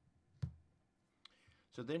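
Two short clicks, the first about half a second in and a fainter one a little under a second later, over quiet room tone; then a man starts speaking near the end.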